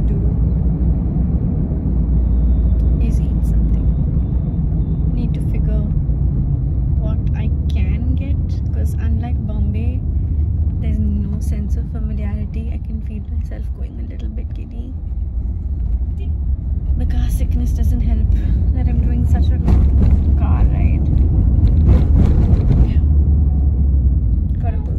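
Steady low rumble of a moving car heard from inside the cabin, with a woman talking over it at times.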